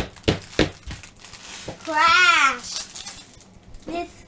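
Small plastic Lego pieces being handled, with crinkling and a few sharp clicks in the first second. About two seconds in, a child's voice makes one drawn-out sound that rises and falls in pitch.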